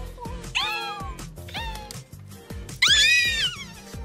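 Background music with three meow-like calls over it. Each call rises and then falls in pitch; the third, about three seconds in, is the longest and loudest.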